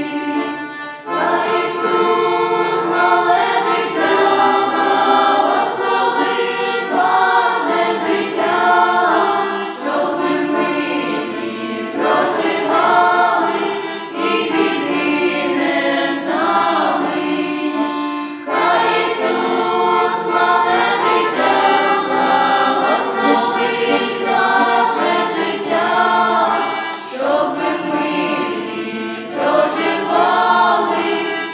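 A choir of girls' and women's voices singing a Ukrainian Christmas carol with button-accordion accompaniment, in phrases with short breaks between them.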